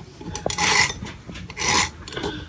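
Two short rasping rubs of the recording device being handled and shifted, with skin or fabric scraping across its microphone, about half a second and a second and a half in.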